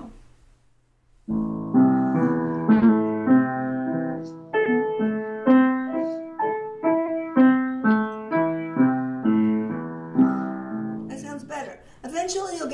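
Upright piano played slowly in a steady run of single notes, about two a second, each struck and left to fade: arpeggio practice in A minor with relaxed, floating arms. The playing starts after about a second of quiet.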